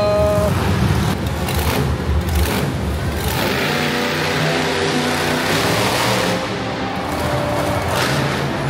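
Monster truck engines running in an indoor arena, mixed with music over the PA. The sound is loud and steady throughout.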